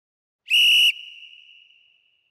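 A single short whistle blast, about half a second long, followed by a ringing tail that fades away over the next second: the interval timer's ten-second warning before the next round starts.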